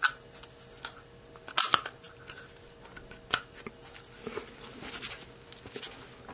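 Small metallic clicks and taps of rifle trigger-assembly parts being handled and fitted into a lower receiver, a few sharp ones standing out at the start, at about a second and a half, and at about three seconds, with lighter clicks between, over a faint steady hum.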